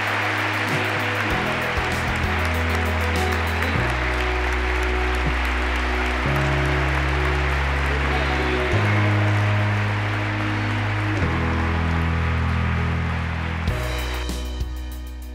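Large audience applauding over background music of slow, sustained low chords that change every couple of seconds. The applause stops near the end, leaving the music.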